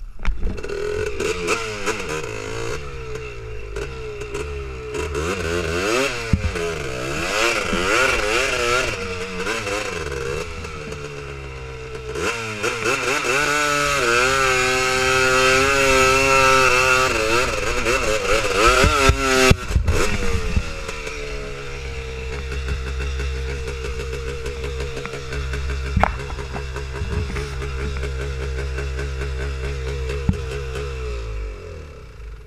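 Honda TRX250R quad's two-stroke single-cylinder engine revving up and down repeatedly under throttle on sand, then held at high revs for several seconds. A few knocks come about two-thirds of the way in, the revs fall away, and the engine idles steadily for the last third.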